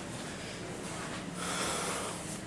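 Soft hissing noise from a man close to the microphone as he moves past it. It swells briefly just before one second in, then again for longer near the end.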